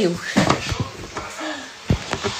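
Handling noise: several knocks and rustles as the phone filming is jostled while someone reaches for a dropped capsule, with the sharpest knock near the end.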